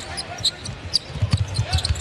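A basketball bouncing on a hardwood court during live play, several irregular thumps.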